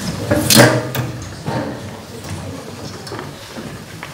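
A box-shaped stage seat set down on a wooden stage floor: a thump about half a second in, followed by a few lighter knocks and shuffling.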